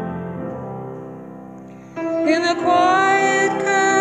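A hymn's piano introduction, its chords fading away, then about halfway through a woman's voice comes in singing the hymn, louder, over the piano accompaniment.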